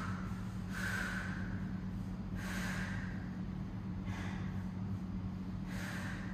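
A woman breathing hard through an exercise set, one short forceful breath about every second and a half to two seconds, four in all, keeping time with her glute-bridge reps.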